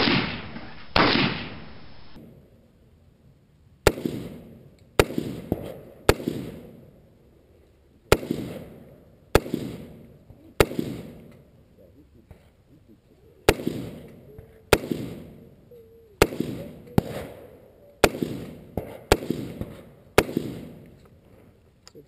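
Knight's Armament SR-15, a 5.56 mm AR-15-type rifle, fired in single aimed shots from the prone position, about fifteen shots spaced roughly a second apart with a few short pauses, each shot trailing off in an echo.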